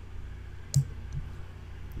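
A computer mouse clicking: one sharp click about three-quarters of a second in, then a fainter click soon after, over a low steady hum.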